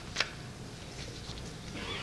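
A pause in a talk, holding the steady background noise of a large audience hall. There is one sharp click just after the start and faint scattered rustling.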